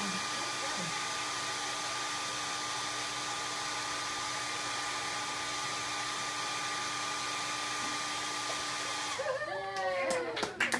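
Handheld hair dryer blowing steadily, an even rushing hiss with a constant whine, switched off shortly before the end. Voices follow it.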